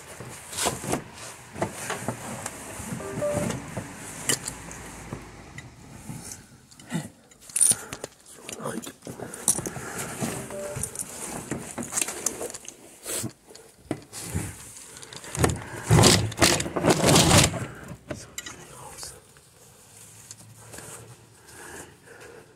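Irregular clattering, knocks and rustling from someone moving hurriedly past a plastic crate and over dry leaves, with the camera being handled. The loudest burst of clatter comes about two-thirds of the way in, and it dies down near the end.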